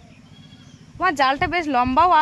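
A goat bleating: one long, quavering call that starts about halfway through.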